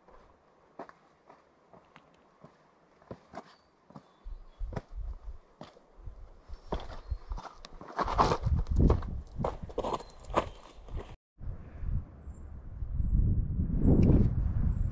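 Hiking-boot footsteps scuffing and crunching on rock and grit as a hiker picks his way down a steep slope. The steps are faint and spaced out at first, then grow louder and closer together, and are loudest from about eight to eleven seconds in. After a brief break, a low wind rumble on the microphone takes over near the end.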